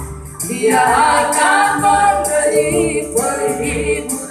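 A group of women singing a gospel song together into microphones, with electronic keyboard accompaniment; a new sung line comes in about half a second in after a short dip.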